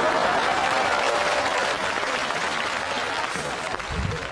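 Studio audience applauding, the clapping fading toward the end.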